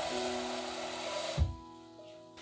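Tap water running into a stainless steel bowl, a steady splashing rush that stops about one and a half seconds in with a single low thump.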